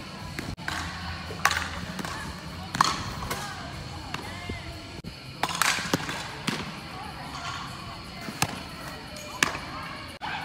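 Fastpitch softballs popping into catchers' mitts, about six sharp pops at irregular intervals, over voices and music in the background.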